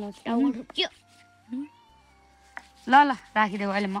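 A cat meowing several times: short rising-and-falling meows in the first second, then a louder, longer drawn-out meow near the end.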